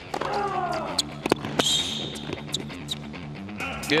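Tennis rally: several sharp racket-on-ball strikes about one to two and a half seconds in, over background music with a steady stepping bass line. A falling voice-like cry comes near the start.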